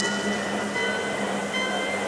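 Hardstyle music at a breakdown: a held synth chord of several steady tones with no kick drum or bass under it. Its low note drops out just before the end.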